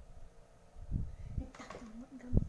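A couple of dull low thumps about a second in, then a person's voice making a low, steady hum-like sound through the second half.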